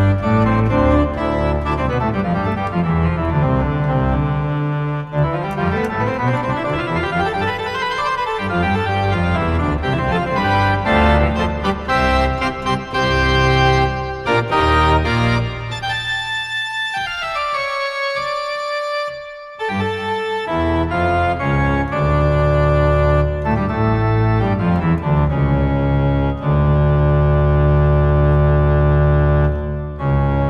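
Virtual pipe organ from the Omenie Pipe Organ iPad app playing full organ with all stops drawn: loud, sustained chords over a deep pedal bass. A little past halfway the bass drops out and a thinner upper line carries on for a few seconds before the full chords return, ending on a long held chord.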